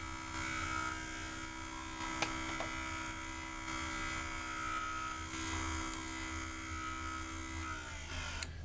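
Truth Hardware Sentry II motorized skylight/window operator running steadily as it drives the sash closed, a small electric motor's even hum with a faint tick about two seconds in. It stops just before the end, the sash fully closed.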